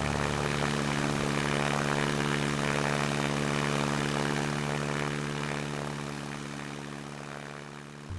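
Stinson 108's piston engine and propeller running at full takeoff power, a steady drone with several even tones, slowly fading over the last few seconds.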